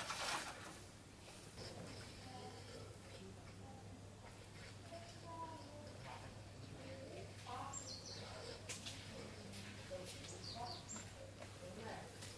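Faint bird chirps scattered through quiet outdoor ambience over a low steady hum, with a few short high-pitched chirps between about seven and eleven seconds in. A brief burst of rustling noise comes right at the start.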